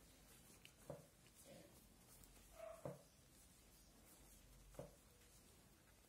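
Near silence, with faint soft clicks of knitting needles about every two seconds as stitches are purled.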